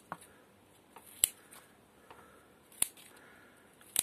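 Scissors snipping petunia shoots: a few sharp clicks of the blades closing, about one every second and a half.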